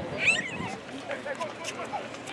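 Players calling out to each other during a soccer match, with a short, high-pitched shout about a quarter of a second in.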